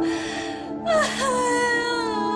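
A woman crying: a breathy sob, then about a second in a louder wailing cry that dips and rises in pitch, over background music with sustained notes.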